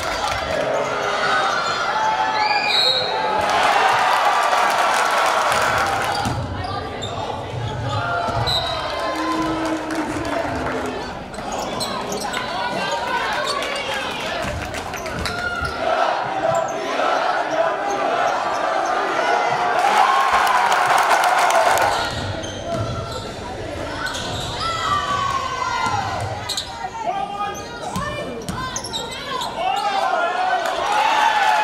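Basketball game sound in a gym: a ball dribbling on a hardwood court, short sneaker squeaks, and voices from players and the crowd, with the crowd getting louder twice.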